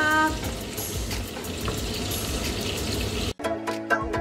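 A steady hiss from pasta cooking in a stainless steel pan as it is stirred with a wooden spatula. A little over three seconds in, the hiss cuts off and music with a regular beat starts.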